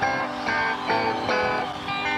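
Electric guitar played loosely on stage, a run of separate single notes picked about two to three a second.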